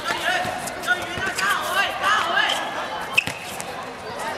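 People shouting and calling, with sharp knocks of a football being kicked and bouncing on a hard court surface. The loudest knock comes about three seconds in.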